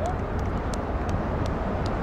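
Steady low rumble of outdoor background noise, with a few faint sharp clicks and a brief voice-like cry right at the start.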